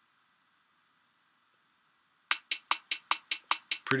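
GarageBand Rock Kit bass kick drum playing back a programmed pattern of evenly spaced hits at 150 beats per minute. The kicks start a little past halfway in and run at about five even hits a second.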